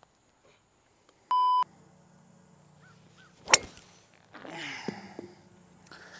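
A short electronic beep about a second in. About halfway through comes the sharp crack of a driver striking a golf ball off the tee, the loudest sound, followed by about a second of rustling noise.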